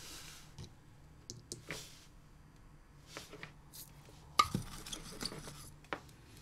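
Small clicks and scratchy rubbing of a soldering iron tip and a thin wire worked against a drone flight controller's solder pad, with a louder cluster of scrapes about four and a half seconds in. The iron is not melting the solder properly: something is wrong with the soldering iron.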